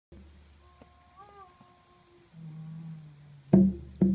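Faint, wavering pitched tones, then a low hum, and about three and a half seconds in a single loud strike on a hand drum with a low, ringing boom.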